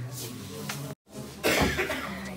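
A person coughing once, a short loud noisy burst about three-quarters of the way through, just after a brief audio dropout at an edit; faint voices before and after.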